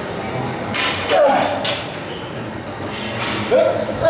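Short strained vocal sounds from men working through a dumbbell set, about a second in and again near the end, in time with the reps. The sounds mix effortful breaths and grunts with a coach's rep count.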